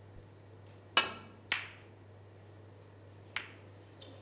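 Snooker shot: the sharp click of the cue striking the cue ball about a second in, then the click of the cue ball hitting a red about half a second later. A fainter ball click follows near the end.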